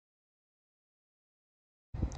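Dead silence, with low rumbling noise cutting in abruptly at the very end.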